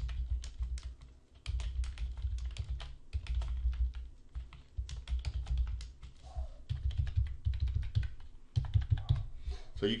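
Typing on a computer keyboard: quick runs of keystroke clicks with low thuds under them, broken by short pauses.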